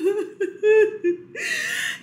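A woman's exasperated whimpering laugh: a string of short broken whimpers, then one longer drawn-out whine near the end.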